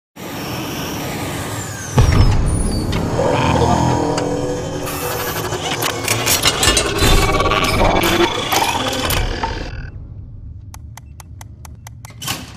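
Cartoon robot-transformation sound effects: a heavy hit about two seconds in, then several seconds of busy mechanical whirring, clanking and clicking as the robot turns into a toaster. Near the end it settles into a short run of quick, even ticks.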